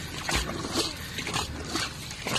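Wooden paddles of a long-boat crew dipping and pulling through river water in unison, a rhythmic splash about twice a second.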